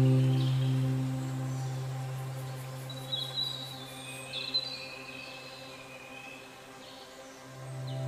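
Calm ambient background music: a long low note fades slowly, a few bird chirps sound about three to four and a half seconds in, and the music swells again near the end.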